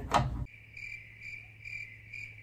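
A high, thin chirping that pulses evenly about twice a second, cutting in abruptly about half a second in after speech.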